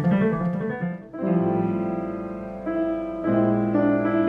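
Piano music: quick notes on a Yamaha YDP-223 digital piano for about a second, then a short break and slow, held chords that change every second or so.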